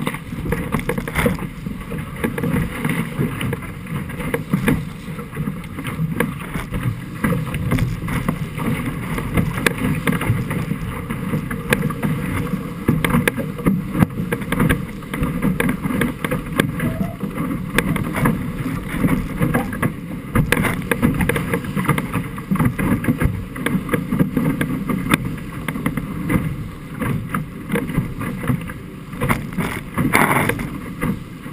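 Musto Skiff's hull rushing through choppy water at speed, with frequent short slaps and splashes of spray. Wind buffets the deck-mounted camera's microphone throughout.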